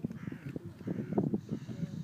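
A crow cawing harshly over an uneven, gusty low rumble.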